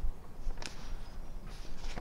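Quiet background with a low rumble and a faint click about two-thirds of a second in; no distinct sound source.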